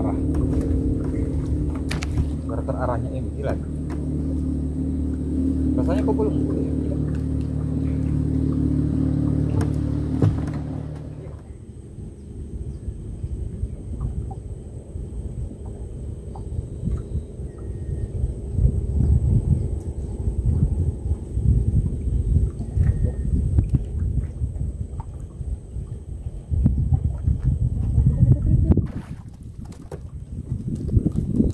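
Small wooden fishing boat's engine running at a steady speed, then shut off about eleven seconds in. After it stops there is only a low, uneven rumble that rises and falls.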